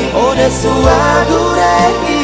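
Music of a Selaru-language pop song: a gliding lead melody over a sustained bass line and a drum beat.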